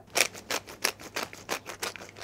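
Hand-twisted glass pepper grinder grinding peppercorns: a quick, even run of crunching clicks, about seven a second.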